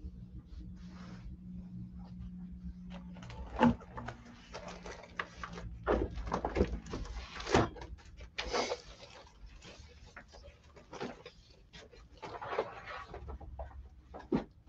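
Paper goods and other collectibles being handled and shuffled: irregular rustling with scattered knocks and clicks, loudest around four seconds in and again around seven and a half seconds.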